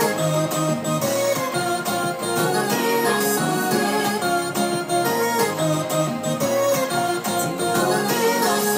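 Keyboard music: chords and a melody played continuously on a MIDI keyboard controller, with many notes sounding together.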